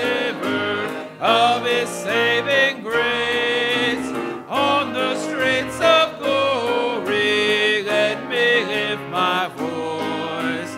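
Congregation singing a gospel hymn together with instrumental accompaniment, voices holding and sliding between sustained notes over a steady bass line.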